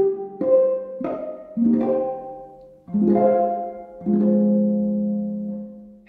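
Sampled concert harp (VSL Synchron Harp, recorded from a Lyon & Healy Style 30 concert grand harp) playing a short phrase of about six plucked notes and chords. The last chord is held and fades toward the end as the strings are damped on release of the sustain pedal.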